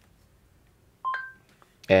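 Google voice typing's short two-note electronic chime from the phone, a lower tone followed by a higher one, about a second in. It sounds as the microphone stops listening.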